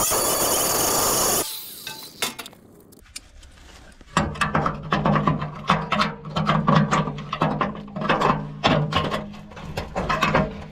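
Angle grinder cutting through a rusted steel battery hold-down bracket, then winding down about a second and a half in. From about four seconds, sharp metal clanks and scrapes follow as pliers work the cut bracket loose, over a steady low hum.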